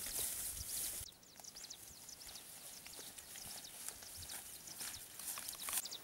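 Faint outdoor ambience of small birds chirping over and over in short high calls. A rustle of grass runs through the first second and breaks off abruptly.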